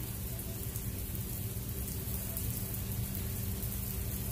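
Steady hiss of heavy rain falling outside, heard from indoors, with a low steady hum underneath.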